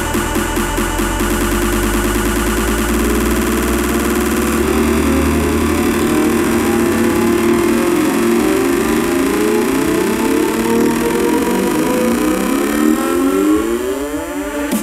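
Psytrance DJ mix in a breakdown without the kick drum: layered synth patterns over a held bass that drops out about halfway through. Rising synth sweeps build near the end, leading into the drop.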